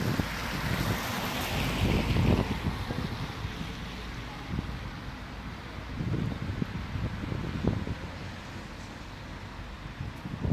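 A car driving past on a rain-wet road, its tyre hiss swelling to a peak about two seconds in and then slowly fading. Wind buffets the microphone with low rumbles throughout.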